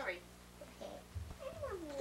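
A short, whiny vocal cry about a second and a half in that slides down in pitch, with a second one starting right at the end.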